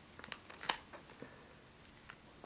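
Faint handling noise from a plastic bag and small objects on a table: soft crinkling and a few light clicks in the first second, then near quiet.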